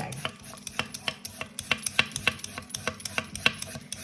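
Handheld vegetable peeler shaving thin ribbons off a carrot held against a wooden cutting board: short, quick scraping strokes, about four a second.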